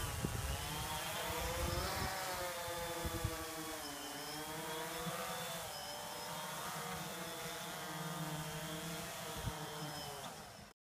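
White quadcopter drone's electric motors and propellers whining in flight, the pitch rising and falling together as the throttle changes while it manoeuvres and comes down low to land.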